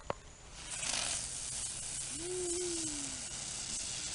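A ground firework hissing steadily as it sprays sparks, the hiss starting about half a second in just after a sharp click. In the middle a person makes a short, drawn-out vocal sound that rises and falls in pitch.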